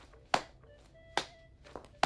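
Two sharp thuds a little under a second apart, over a faint held musical chord.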